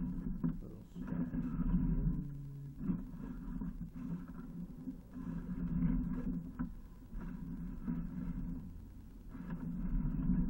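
Sewer inspection camera's push cable being fed down a drain line, a low rumble that swells and fades in repeated strokes about once a second.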